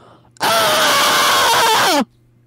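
A man screaming into a microphone, loud, harsh and distorted, starting suddenly about half a second in and cutting off near the end as the pitch drops.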